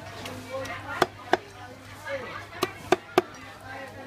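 Cleaver chopping a fish on a wooden chopping block: five sharp chops, two about a second in and three close together near the end.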